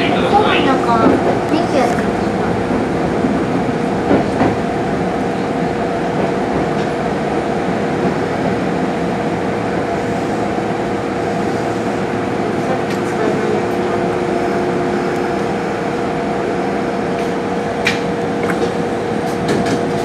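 Electric commuter train running, heard from just behind the cab: a steady wheel-on-rail rumble with a held hum of a few tones from the traction equipment, and an occasional single click from the wheels.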